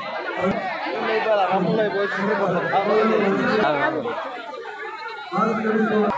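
A crowd of people talking and calling out over one another close to the phone. The voices thin out for about a second near the end, then pick up again.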